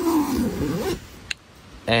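Tent window zipper being pulled shut along the curved window opening. It is a rasping run of under a second, wavering in pitch, followed by a short click.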